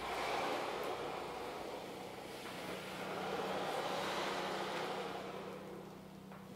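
Piano accordion made to 'breathe': the bellows are opened and closed with the air valve open and no keys pressed, giving a soft rush of air that swells twice. A faint, steady low tone sounds under it in the second half.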